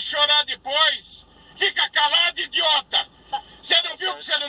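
Speech only: a man's voice talking in bursts, with two short pauses.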